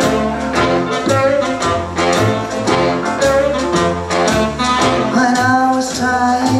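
Small live swing band playing an up-tempo shuffle: double bass, drums and piano under saxophone and clarinet lines, with a steady beat.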